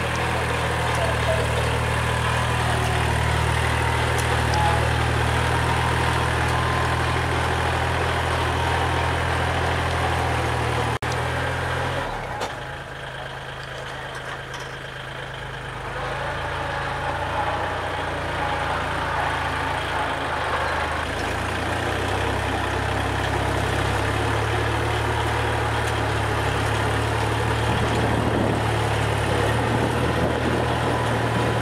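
Kubota L3608 tractor's three-cylinder diesel engine running steadily under load as its rear rotary tiller churns the soil. About eleven seconds in, the sound drops suddenly and stays quieter for a few seconds, then rises again to full strength.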